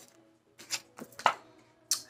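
A few soft clicks and taps of round oracle cards being handled and drawn from the deck, three short ones in the second half.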